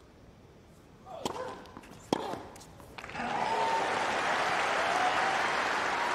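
Tennis ball struck twice by racket, about a second in and again a second later, in a hushed arena. From about three seconds in the crowd breaks into loud, steady applause and cheering as the home player saves the break point.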